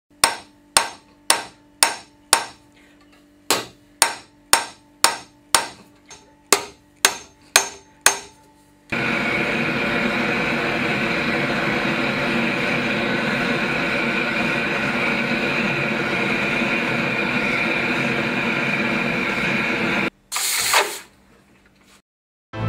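A hand hammer beating a thin copper sheet on a small metal stake: about fifteen sharp strikes, roughly two a second, with two short pauses. Then, from about nine seconds in, a steady gas torch runs, heating the metal until it glows red, with a brief louder burst before it cuts off near the end.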